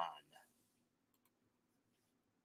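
Near silence in a small room, with a few faint clicks about a second in.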